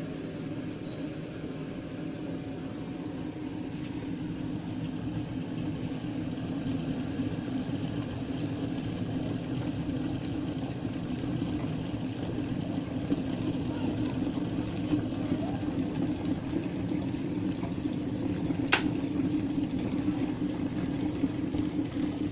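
A Redmond glass electric kettle heating water toward the boil, with a steady rushing rumble that grows gradually louder. A single sharp click comes about three-quarters of the way through as the kettle switches itself off at the boil.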